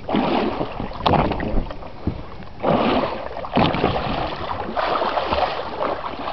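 Water splashing and slapping against the side of a boat in irregular bursts, with wind buffeting the microphone.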